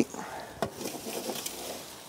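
Vegetables sizzling in a metal tray inside a hot pizza oven, with one sharp knock a little after half a second as the tray is shifted.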